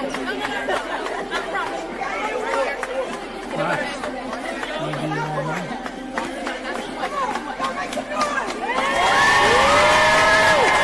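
Crowd chattering in a large gym hall, then breaking into loud cheering and shrieks about nine seconds in.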